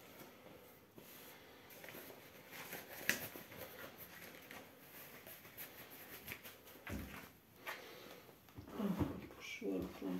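Quiet small-room background with a few faint clicks and knocks, then a person's voice starting near the end.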